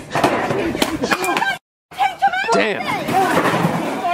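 Loud crashes and clattering as a hard object is smashed onto a concrete patio, then shouting after a short gap in the sound.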